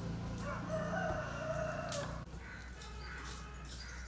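A rooster crowing once, one long call that stops abruptly a little over two seconds in, followed by faint scattered clicks.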